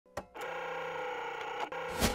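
Logo intro sound effect: a sharp click, then a steady electronic hum of several held tones, broken by a brief glitch near the end.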